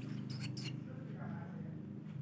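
Long-tailed shrike chicks giving a few short, very high chirps about half a second in, over a steady low hum.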